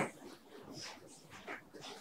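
A pause in a lecturer's talk: faint room tone through the table microphone, with one short click at the start and faint mouth or breath sounds.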